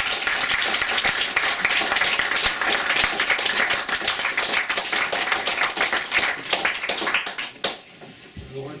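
Audience applauding: dense clapping that thins out and dies away near the end.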